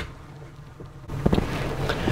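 A sharp click, then low hiss; about a second in, wind buffets the microphone on a moving motorboat and the noise of the boat on the water rises.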